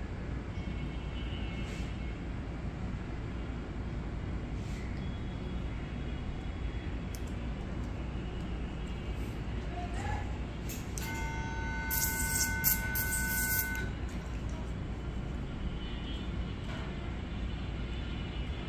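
Steady low background hum. About eleven seconds in, a horn-like tone is held for about three seconds and is the loudest sound.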